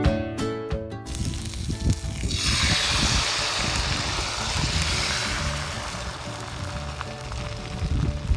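Rice-flour bánh xèo batter sizzling as it is poured into a hot oiled wok, a steady hiss that starts about two seconds in and slowly fades as the batter spreads. Guitar background music plays at the start.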